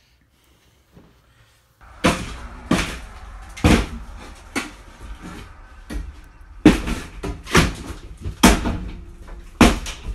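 Hammer blows knocking down an interior wall's drywall and wood stud framing: about eight sharp strikes, starting about two seconds in and coming roughly once a second.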